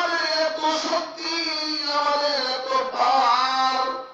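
A man's voice chanting in a sung, melodic style: one long phrase of held, wavering notes that breaks off just before the end.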